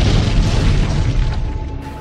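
Explosion sound effect dubbed over a fireball: a loud boom rumbling and dying away over about a second and a half.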